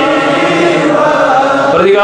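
Devotional chanting in men's voices, a slow melodic recitation with long held notes.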